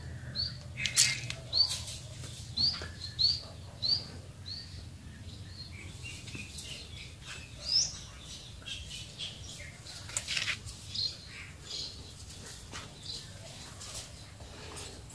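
A small bird chirping: a run of short, high, arched chirps about two a second for the first five seconds, then scattered chirps. A few sharp clicks sound in between.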